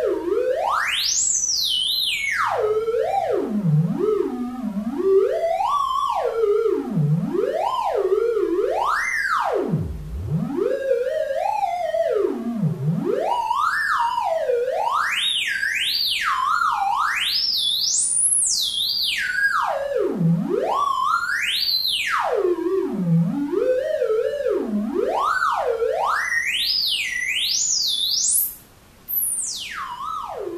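A modular synthesizer oscillator's single tone, a triangle wave, gliding smoothly up and down in pitch at random over a very wide range, from a deep low hum to a high whistle. It is driven by the Żłob Modular Entropy's unattenuated 'infrared' low-frequency random voltage. The tone drops out for about half a second near the end.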